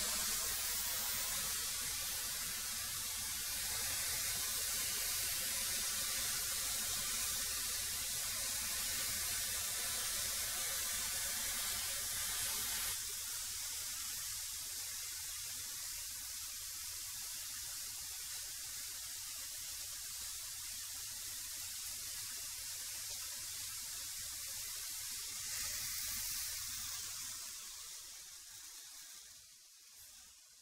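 A 13-inch benchtop thickness planer running with a steady motor whine and hiss, cutting out abruptly about 13 seconds in, shut off by its paddle switch being bumped by accident. A steady hiss carries on after it, then fades away over the last few seconds.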